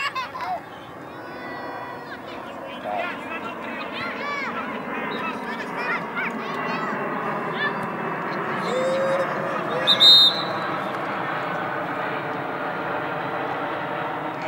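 Scattered voices of youth soccer players and coaches calling across an open field, many short distant shouts over a steady outdoor background. About ten seconds in a short high-pitched call stands out as the loudest sound.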